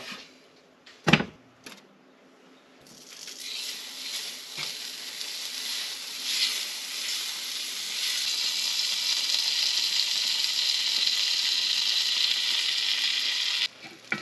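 Butter sizzling in a hot cast iron skillet, building up over several seconds to a steady sizzle that cuts off abruptly just before the end. A single sharp knock comes about a second in.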